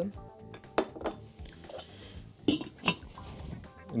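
Stainless steel cookware clinking: four sharp metallic knocks of pots and utensils, in two pairs, the first pair near the first second and the second near the three-second mark.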